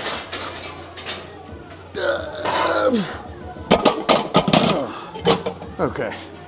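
A man's strained grunts and groans as he grinds out the last reps of a burnout set of incline barbell bench press, each groan falling in pitch. A few sharp knocks about four seconds in as the loaded barbell goes back onto the rack hooks.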